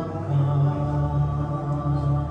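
A hymn being sung to accompaniment, with long held notes.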